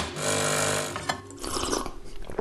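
De'Longhi PrimaDonna Elite bean-to-cup coffee machine running, a steady mechanical buzz that is loudest for about the first second and then drops lower.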